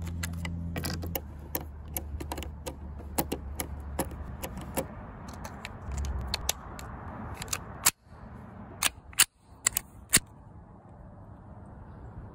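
Small sharp clicks and snaps of a bolt-action .22 rifle's detachable magazine being handled and pressed into the stock, a quick run of them at first, then a few louder, spaced-out metallic clicks about two-thirds of the way through.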